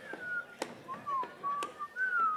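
A person whistling a few short notes that slide downward in pitch, with a few faint clicks.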